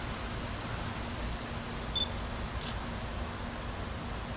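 Steady background hiss and low rumble with a faint hum, broken by one short high chirp about halfway through and a brief faint hiss just after it.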